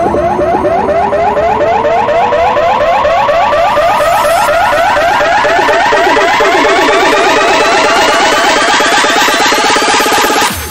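Uptempo hardcore electronic music in a build-up: a fast, evenly repeating synth figure under a long rising pitch sweep that climbs steadily.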